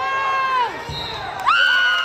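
Children shouting and cheering on a wrestler: two long, high-pitched held shouts, the first trailing off with a falling pitch a little before a second in and the second starting about halfway through. A brief dull thump falls between them.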